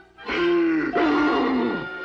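A cartoon tiger's voice giving a long, frightened groan that slides down in pitch as he clings to a tree top, over orchestral film score.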